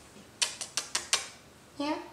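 A rapid run of about five sharp clicks within under a second.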